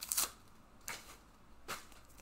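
Pokémon trading cards being handled: three brief dry rustles, one right at the start, one about a second in and one near the end.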